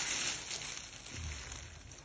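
Plastic food bag rustling softly as it is handled, dying away towards the end.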